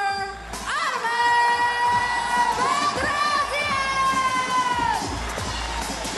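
A ring announcer calls out the winner's name in one long drawn-out shout, held for about four seconds, over a cheering crowd and arena music.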